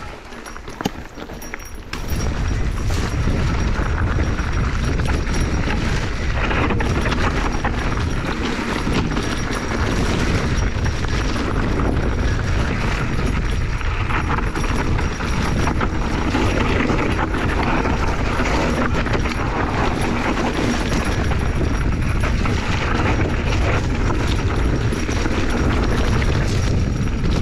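A mountain bike rattling down a rocky, overgrown singletrack, with wind rushing over the camera microphone and brush scraping past the bars. It is quieter for the first couple of seconds, then steady and loud, with a constant jumble of small knocks from the bike over rocks.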